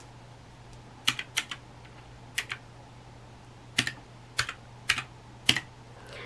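Keys being pressed one at a time on a desktop calculator with round typewriter-style keycaps: about seven sharp, separate clicks at irregular spacing.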